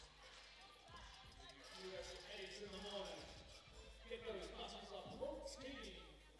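Basketball bouncing a few times on an outdoor court during a break in play, with faint voices of players.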